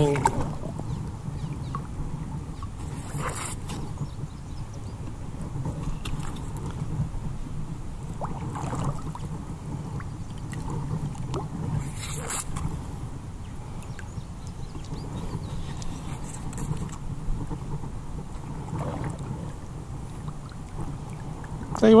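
Lake water sloshing around legs while wading, with a few brief splashes scattered through, as the detector and scoop are worked in the water.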